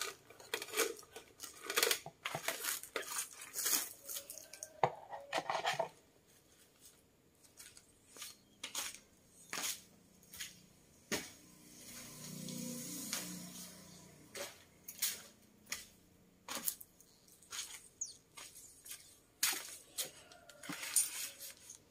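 Hands handling a paper-wrapped foam bouquet core and small tools: a dense run of paper rustles and clicks for the first six seconds, then scattered light clicks and knocks. A brief low hum rises and fades about twelve seconds in.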